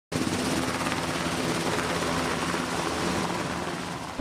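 Two HH-60 Black Hawk helicopters lifting off together, with steady rotor and turbine noise that eases slightly near the end as they climb away.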